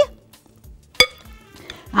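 A single sharp clink about a second in, ringing briefly: a utensil striking the glass bowl of strained yogurt.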